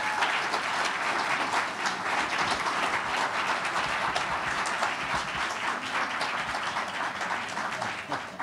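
Audience applauding, a steady patter of many hands clapping.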